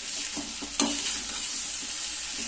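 Pasta frying and sizzling in an aluminium kadai while a slotted metal spatula stirs and scrapes through it, with one louder stroke a little under a second in.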